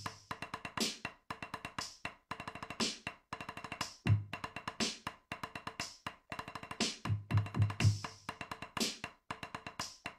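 Programmed drum-kit groove playing back from the Funklet website: a looping pattern of hi-hat and snare hits, with a quick run of four bass-drum hits near the end.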